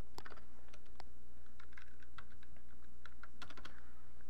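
Computer keyboard being typed on: a run of quick, irregular key clicks, over a steady low hum.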